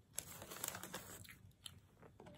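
Thin plastic dessert cup crinkling and a plastic spoon scraping and clicking against it: a quick cluster of small crackles in the first second, then fainter.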